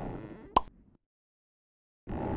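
Cartoon sound effect of a wet gush that fades out, with one sharp plop about half a second in.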